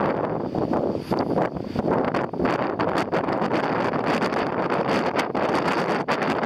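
Strong wind buffeting the microphone: a steady rushing noise broken by frequent short pops and gusts.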